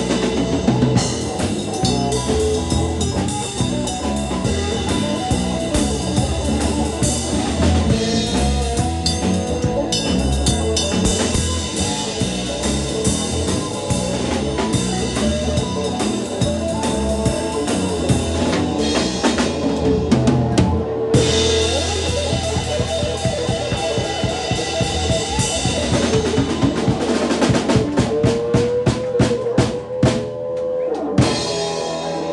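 Live band playing an instrumental passage with the drum kit prominent, kick, snare and rimshots over sustained pitched notes, building to a fast run of drum strokes near the end.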